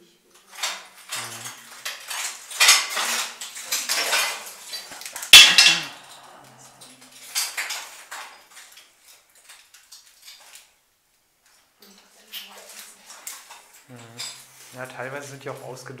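Irregular clattering and crunching of loose metal and glass debris on a rubble-strewn floor, with the loudest sharp clink about five seconds in and a shorter flurry a couple of seconds later.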